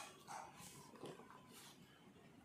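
Near silence, with a few faint, short rustles of a glossy saree catalogue page being turned.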